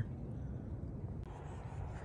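Faint outdoor background: a low, steady rumble with no distinct events. Its tone shifts slightly a little over a second in.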